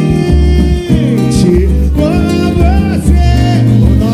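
Live samba music: a voice singing the song's melody in long, gliding notes over acoustic guitar and a steady low bass line.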